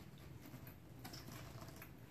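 Faint creaks and small ticks from a new black cowhide leather Longchamp tote being handled, the leather rubbing on itself.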